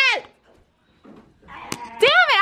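The tail of a high-pitched voice squealing ends a moment in, followed by near quiet and a single sharp click near the end.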